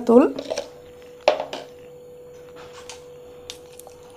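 A short spoken word at the start and a brief sound about a second later, then a few faint light clicks, over a faint steady high-pitched hum.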